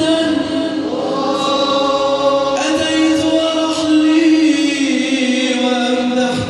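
Male choir chanting an Islamic devotional song (nasheed) in unison over a PA, in long held notes that move slowly in pitch.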